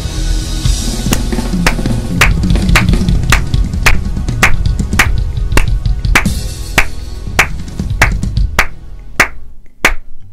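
Acoustic drum kit played hard in a steady groove, with sharp accented strikes about twice a second over busy low drums. The playing thins out near the end and closes on a last hit.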